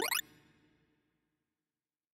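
Synthesized tones from a sorting-algorithm visualizer's final pass over the sorted array: a quickly rising pitch glide that cuts off about a fifth of a second in and fades away, leaving silence.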